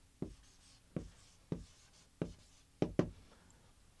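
Marker writing on a whiteboard: about six short, separate strokes, then the pen stops about three seconds in.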